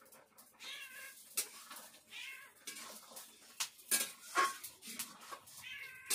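A cat meowing three times, with sharp clicks and scrapes of a spatula knocking against a wok between the calls; the clicks are the loudest sounds.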